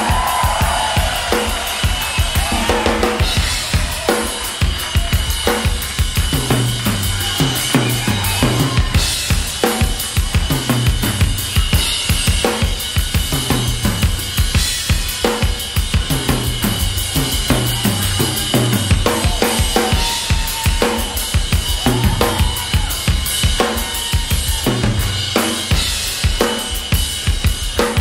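Live drum solo on a Yamaha drum kit: fast, dense strokes on snare, bass drum and cymbals, with fills stepping down the toms every several seconds.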